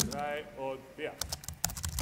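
Computer keyboard keys being tapped: a quick run of light clicks in the second half, after a short voice at the start.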